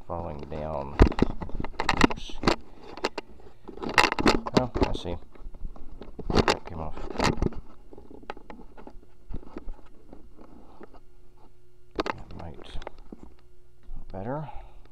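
Hands working clear plastic tubing onto brass barbed fittings of a jet pump's pressure-switch line: scattered knocks, clicks and scrapes in several clusters, over a steady low hum.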